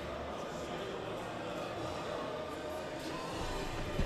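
Low, steady background of indistinct voices mixed with music, with no distinct blows or impacts standing out.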